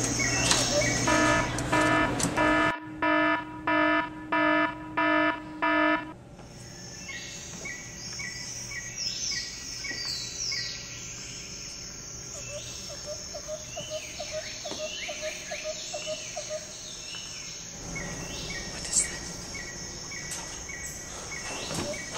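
Birds calling and crickets chirping in a steady nature-soundtrack bed. In the first six seconds a pulsing electronic tone sounds about six times over it, then stops.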